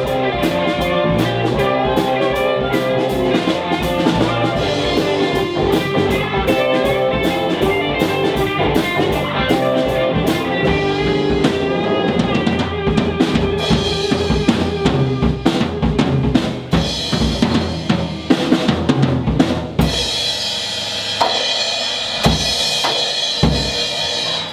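Live blues-rock band playing an instrumental passage on electric guitars, bass, drum kit and harmonica. About two thirds in the full band thins out to loud drum hits and fills, with sustained high notes over them near the end, as the song heads to its close.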